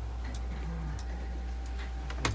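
Soft regular ticks, about one every two-thirds of a second, over a steady low hum, with a faint low murmur of voice.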